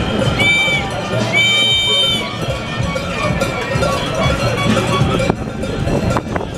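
Demonstration crowd in the street: voices and general hubbub. Near the start there are two high-pitched blasts, a short one and then a longer one about a second later.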